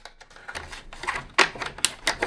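A few sharp clicks and taps of small hardware being handled and fitted on an aluminium component mounting plate. The two loudest come a little past halfway and near the end.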